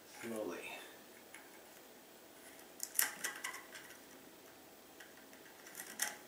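Needle-nose pliers clicking and scraping against a broken light bulb's metal base as it is worked loose in a ceramic lamp socket: a short cluster of sharp metallic clicks about three seconds in, and a few fainter ones near the end. A brief voice sounds just at the start.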